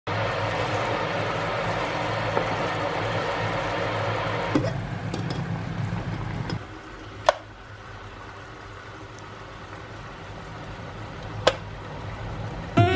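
Thick sauce bubbling hard in a frying pan, then quieter boiling from about halfway through, with two sharp clicks in the quieter part.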